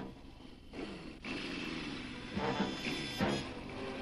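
Small motorcycle engine running and revving as the bike pulls away, its pitch rising and falling in the second half, with soundtrack music coming in near the end.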